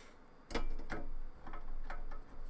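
A series of light metallic clicks, two or three a second, starting about half a second in: a screwdriver and screws being worked against a steel hard-drive bracket as the drive's mounting screws are fastened.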